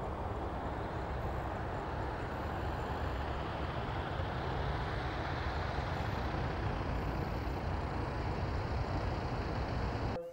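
Piper J-3 Cub's engine and propeller running steadily at low power as the light airplane lands on a grass strip and rolls toward the camera, heard from a distance.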